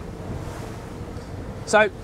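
Wind buffeting the microphone and water rushing past the hull of a boat under way, over the low steady hum of its twin Mercury V12 600 hp outboards.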